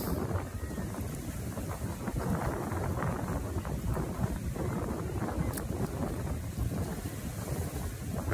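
Wind buffeting a phone's microphone outdoors, a steady low rumble.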